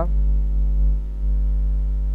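Steady electrical mains hum: a loud low drone with a stack of fainter steady tones above it and no other events.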